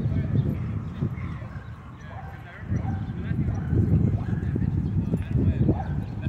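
Dogs barking and yipping at a distance, with people's voices in the background, over a steady low rumble.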